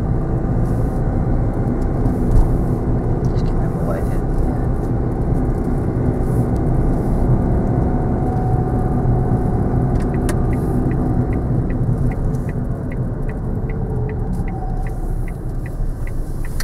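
Car engine and road noise inside the cabin while driving. About ten seconds in, the turn indicator starts ticking at about three ticks a second, signalling the right turn.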